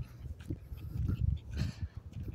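Small sounds of a leashed dog on a walk, among uneven low thumps of the phone being handled, with a short breathy burst about one and a half seconds in.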